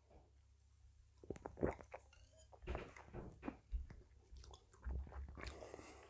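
Faint mouth sounds of a person drinking and tasting beer: swallows, lip smacks and small wet clicks, coming irregularly from about a second in.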